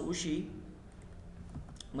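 A few faint computer keyboard clicks during a pause in speech.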